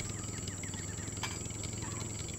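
Faint outdoor ambience in which a bird calls a quick run of short repeated chirps that trail off about a second in, over a low steady hum.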